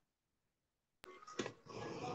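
Dead silence for about a second, then a single sharp click, followed by faint rustling noise and the quiet start of a voice near the end.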